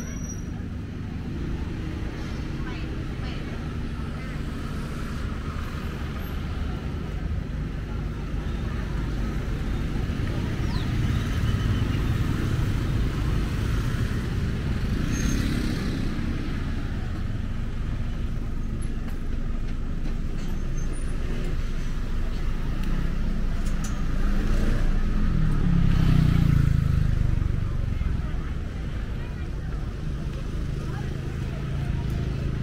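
Street traffic: motorbike and car engines running and passing close by at low speed, with voices in the background. The sound swells about halfway through and is loudest a few seconds before the end, as a vehicle passes close.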